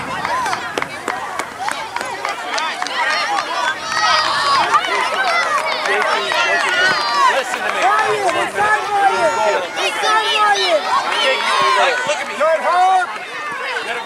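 Many overlapping voices talking and calling at once, a steady chatter with no single clear speaker.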